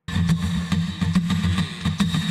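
Live acoustic guitar strumming with hand-played conga drums, cutting in abruptly.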